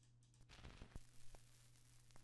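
Vinyl crackle sample played very quietly: a light hiss with sparse soft clicks and pops, coming in about half a second in, over a steady low hum.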